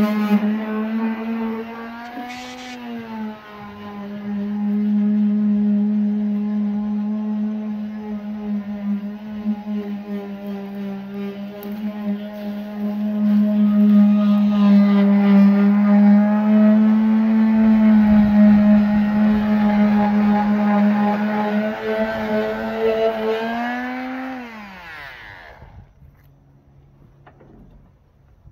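A steady, high-pitched motor drone that rises briefly in pitch about two seconds in, then holds level and winds down near the end.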